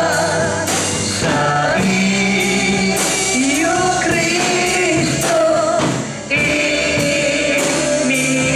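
Gospel worship song: voices singing held notes over instrumental backing with a steady beat.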